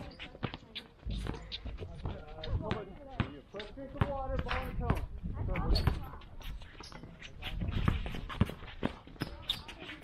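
Basketballs bouncing irregularly on a gym floor, several sharp thuds scattered through, with background voices talking in the middle.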